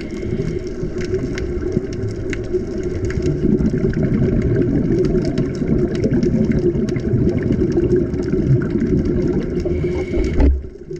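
Underwater sound through a camera's waterproof housing: a steady low drone with scattered sharp clicks.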